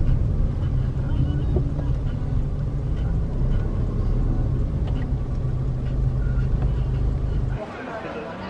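Outdoor street ambience: a loud, steady low rumble, with faint scattered sounds above it, that stops abruptly near the end.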